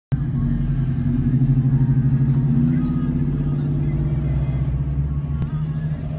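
Steady deep rumble of a car at low speed, mixed with bass-heavy music.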